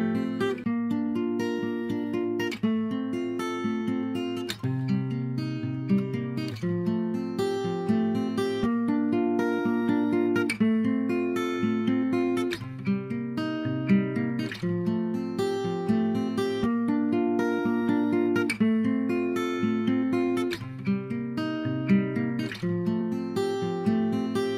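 Background music: an acoustic guitar strumming chords in a steady, even rhythm.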